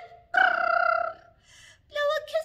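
A woman's voice holding one steady sung note, then a soft breath.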